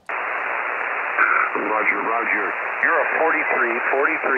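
Ham radio receiver audio on the HF band: a steady hiss of band noise, cut off above about 3 kHz, switches on suddenly as the operator hands over. From about a second in, a distant station's voice comes through the noise.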